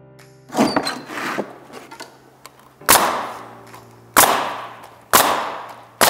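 Pneumatic coil roofing nailer firing nails through an asphalt shingle into the roof deck: about five sharp shots a second or two apart, the first about half a second in and the last at the very end, over background music.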